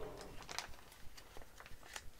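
Clear plastic kit bag being pulled open and handled: faint crinkling with a few small crackles.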